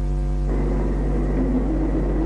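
Steady low hum and hiss of an old, worn film soundtrack. A held tone cuts off about half a second in, leaving a rougher rumbling noise.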